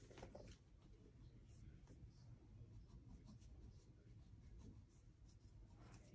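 Faint scratching of a pencil on paper, a steady run of short colouring-in strokes.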